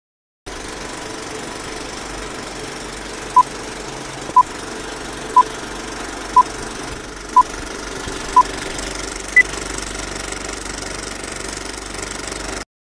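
Old-film countdown leader sound effect: a steady film projector clatter with crackle, over which short beeps sound once a second six times, followed by a single higher-pitched beep.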